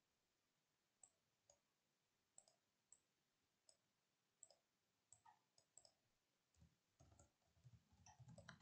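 Near silence, with faint, scattered computer mouse clicks and a few keyboard key presses near the end.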